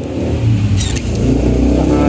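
A motor vehicle's engine running, a low rumble that swells louder about half a second in and holds.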